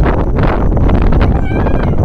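Wind rumbling on a phone microphone, with a brief high-pitched rising squeal about one and a half seconds in.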